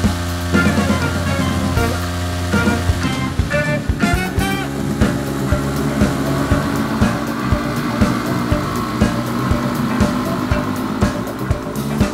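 Background music with a steady beat, playing over the riding footage.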